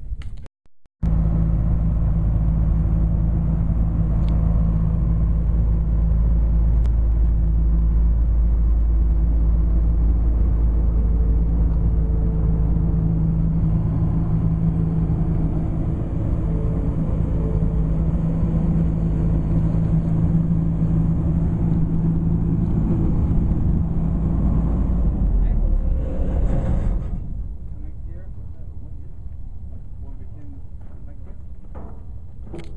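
A vehicle engine running steadily while towing a draper header on its transport wheels. It stops about 27 seconds in, leaving quieter outdoor background.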